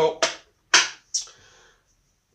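Three sharp clicks, roughly half a second apart, from the switches on a motorcycle lighting test board wired to a Motogadget m-unit control box.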